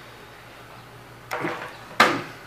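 Faint steady hum, then a brief rustle of handling and a sharp click near the end, as the opened laptop and its parts are handled on the bench.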